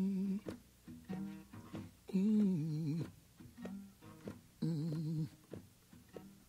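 Acoustic country blues: a man's low moaning hum in three held, wavering phrases, with plucked acoustic guitar notes between them.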